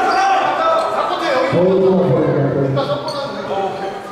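Several men's voices calling out and talking over one another in a large gymnasium, with a deeper voice joining about a second and a half in.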